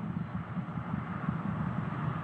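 A steady low rumbling noise with no distinct tones, under the webcast's narration.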